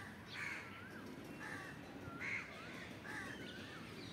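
Birds calling in the background: a run of short calls about once a second, some harsh and some wavering up and down in pitch.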